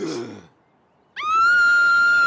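A woman's long, high scream, starting about a second in and held at one steady pitch.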